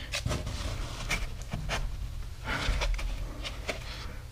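Foam padding pieces being handled and pushed into place inside a plywood crate: a scatter of short clicks, scrapes and soft rustles, with a brief longer rustle in the middle.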